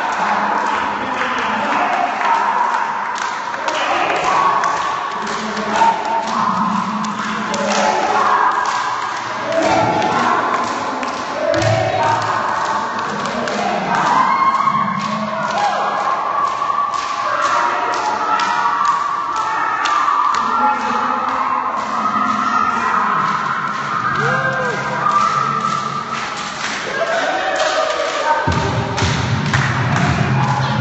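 A group of people vocalising at once, overlapping sung and hummed tones of different pitches, with many irregular thumps and knocks throughout.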